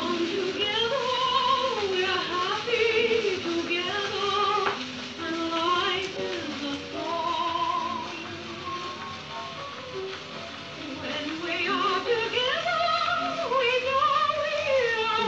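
A 1934 home-made phonograph record being played on a turntable: a woman singing with a wide vibrato over instrumental accompaniment.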